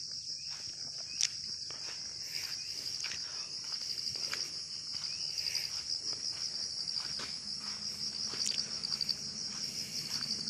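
Steady high-pitched chorus of insects, with a few faint clicks and knocks underneath, one sharper click about a second in.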